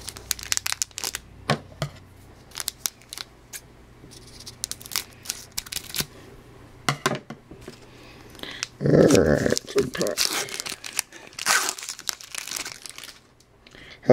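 Foil hockey card pack wrapper crinkling and tearing as it is opened, with quick clicks and rustles of cards being handled. The rustling grows louder and fuller about nine seconds in.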